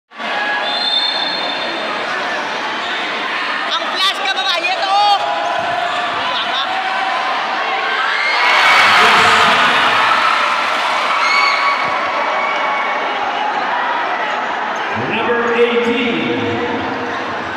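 Crowd din in a packed gymnasium during a basketball game, with shouting voices, ball bounces and shoe squeaks on the court. A short cluster of squeaks comes about four to five seconds in, and the crowd swells into a cheer a little after eight seconds as a shot goes up near the basket.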